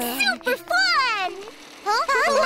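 High-pitched cartoon character voices making wordless exclamations, one voice sliding down in pitch about a second in, followed by a brief pause.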